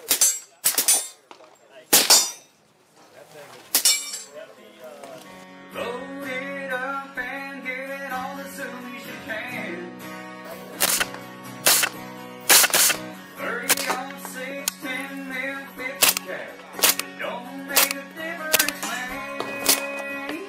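Four suppressed shots from a Henry .45-70 lever-action rifle fitted with a Banish 46 suppressor, in the first four seconds. About six seconds in, background music with a steady beat takes over, with sharp hits over it.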